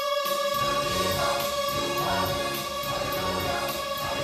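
Large mixed church choir singing, holding long sustained notes while the lower parts move beneath them.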